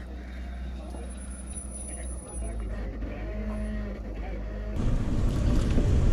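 Off-road Jeep engine running: a faint, steady low hum, then from about five seconds in a louder, rougher low rumble as the sound switches to the driver's own Jeep.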